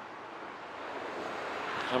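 Faint, steady outdoor background hiss with no distinct events, growing a little louder toward the end.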